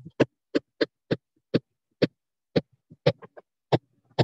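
Stylus tapping and clicking against a tablet while handwriting, about ten sharp, irregularly spaced taps.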